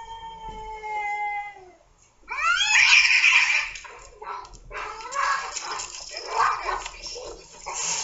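Two domestic cats in a standoff: one long, drawn-out yowl, then about two seconds in a sudden loud outburst of screeching as they fight, carrying on in rough bursts.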